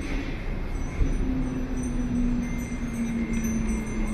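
City street ambience with a steady low hum that slowly drops in pitch, plus faint high ringing tones.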